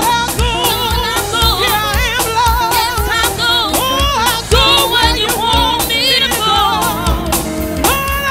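Up-tempo gospel music: sung vocals with a wide vibrato over a steady, fast drum beat and bass.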